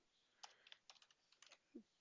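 Faint typing on a computer keyboard: a quick run of about eight light keystrokes.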